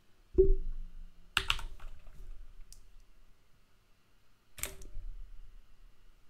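Computer keyboard keystrokes: three separate key presses, typing a two-digit number and then pressing Enter.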